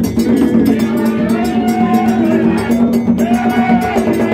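Gagá drumming: hand drums and rapid metallic percussion over a steady low drone. A long rising-and-falling wail sounds twice, first about a second in and again near the end.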